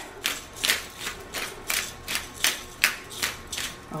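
Hand-twisted pepper grinder grinding peppercorns: a quick, regular series of ratcheting clicks, about four a second.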